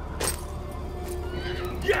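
A horse whinnying briefly in a high, wavering call about a second and a half in, over a low, steady music drone with a held note.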